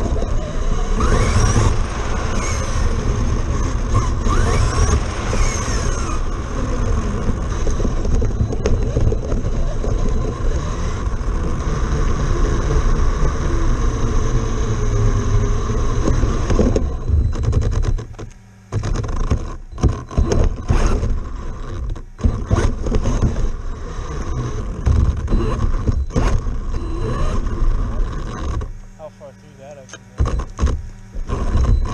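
Onboard sound of a Traxxas Slash RC truck driving over rough pavement: its electric motor and drivetrain whine rises and falls with the throttle over a heavy rumble of tires and chassis. The sound cuts out briefly several times in the second half as the throttle is let off.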